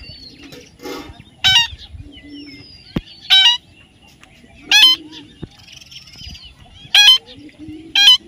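Parakeets giving loud, harsh squawking calls, one about every second and a half, with faint thin whistles from other birds between.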